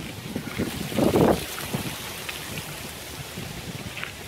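Wind blowing across the microphone, an uneven low rumble with a stronger gust about a second in.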